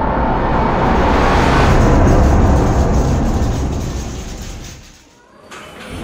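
Channel logo intro sound effect: a loud, noisy swell heavy in the bass that peaks about two seconds in and fades away by about five seconds.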